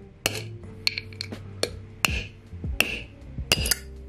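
About six hammer blows on a socket held against the wheel bearing of an electric scooter's hub motor, each with a short metallic ring, driving the bearing out of the hub. Background music plays underneath.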